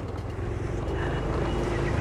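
Honda Activa scooter running at low riding speed: a steady low engine hum under road and wind noise on the microphone, slowly getting louder.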